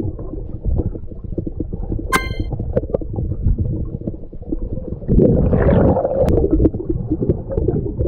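Muffled underwater noise picked up by an action camera's microphone while snorkelling: a steady low rumble and crackle. A short ringing ping comes about two seconds in, and a louder rush of noise about five seconds in.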